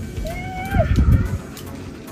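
A wordless high-pitched vocal sound from a person, held about half a second and dropping at the end, followed by a short low rumbling thud.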